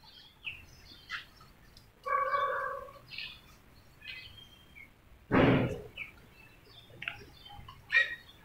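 Birds chirping and calling on and off, with one held, steady-pitched call about two seconds in and a louder short burst of sound a little past the middle.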